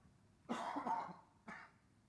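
A man coughing: a longer cough lasting under a second, then one short cough.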